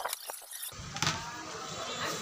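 Light clicks and taps of a screwdriver and hands working on the case of a finned aluminium e-rickshaw motor controller box. Under a second in, a steady low background noise starts suddenly.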